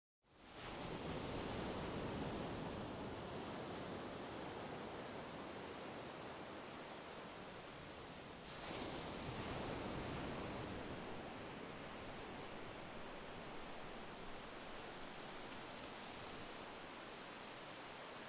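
A steady rushing noise bed, even and without any tone, that fades in just after the start and swells once about eight and a half seconds in.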